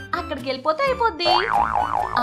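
A woman's voice speaks, then a cartoon boing-like sound effect comes in about a second in, its pitch wobbling rapidly up and down, over light background music.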